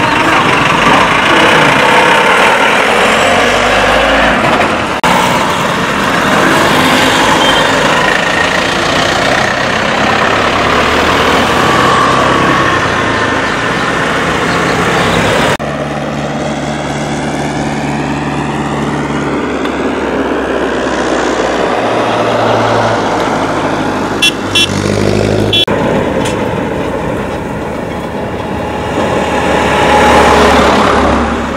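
Road traffic going past close by: a bus, motorbikes and cars driving by with engine and tyre noise. The sound changes abruptly a few times, and a couple of short sharp sounds come about three-quarters of the way through.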